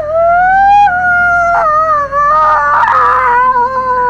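A long, high wailing cry of grief, held unbroken and slowly sinking in pitch.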